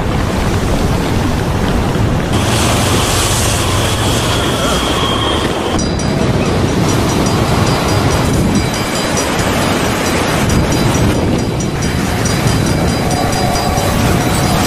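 Blizzard wind blowing hard against the microphone: a loud, steady rush that changes abruptly about six seconds in.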